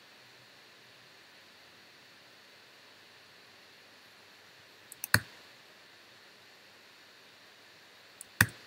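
Computer clicks: a quick run of three sharp clicks about five seconds in, the last the loudest, over faint steady room hiss.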